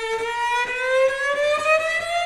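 Solo cello holding a high note with vibrato, then sliding slowly and steadily upward in pitch in one long glissando.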